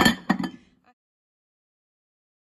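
A glass lid clinking and knocking as it is set down over a casserole dish, lasting about half a second, followed by dead silence.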